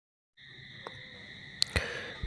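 A steady high-pitched tone begins about half a second in, with a faint click just under a second in and a louder click about a second and a half in.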